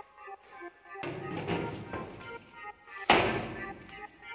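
A square aluminium cake tin turned over and set down upside down on a paper-covered steel worktop to release the baked cake: a stretch of handling noise, then one sharp thump about three seconds in, the loudest sound. Background music plays throughout.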